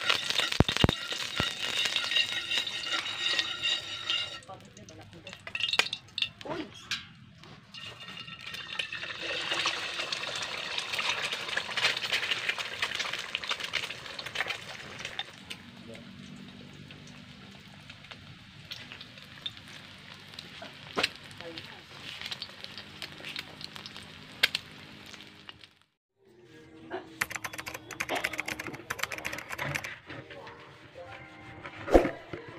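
Food sizzling as it fries in hot oil in a wok over a wood fire. The sizzle is loudest at the start and again about ten seconds in, then quieter, and it breaks off abruptly near the end.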